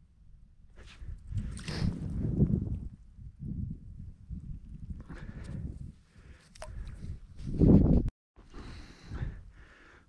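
Handling noise on the ice: clothes rustling and snow crunching as an ice angler kneels over a hole and pulls a fishing line up by hand. The bursts come and go, loudest about two seconds in and again just before eight seconds, with one sharp click between them.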